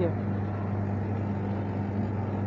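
Steady low hum with an even background noise, from the supermarket's refrigerated produce cases and air handling.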